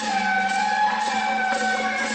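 Music with long, held high notes that waver and glide slightly in pitch, over a steady low hum.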